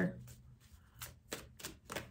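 A handful of short, light clicks and taps from tarot cards being handled as the next card is drawn from the deck, in a quick irregular cluster in the second half.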